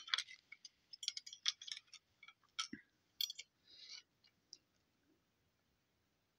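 Faint, scattered light clicks and small taps from handling close to the phone's microphone, mostly in the first four seconds and then dying away.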